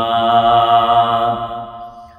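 A man reciting a Quranic verse in Arabic in a melodic chant, holding one long note that fades near the end.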